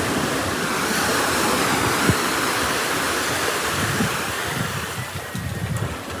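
Sea surf washing up a sandy beach as a steady rush, with wind buffeting the microphone in low, irregular gusts.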